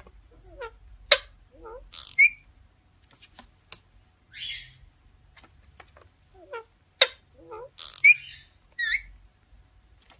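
Indian ringneck parakeets calling in short scattered bursts: sharp high chirps and squawks with quick falling whistles, mixed with clicks and short wavering lower notes.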